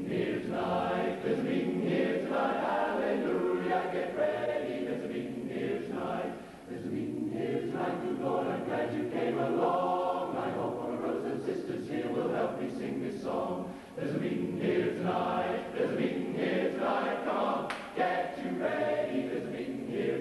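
Male barbershop chorus singing a cappella in close harmony, phrase after phrase, with brief pauses for breath between some phrases.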